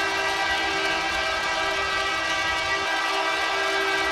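A steady, unbroken horn blast with several tones sounding together at an even loudness.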